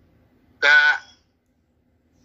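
A person's brief vocal interjection: one short sound held at a steady pitch for under half a second, just over half a second in. The rest is a quiet pause between speakers.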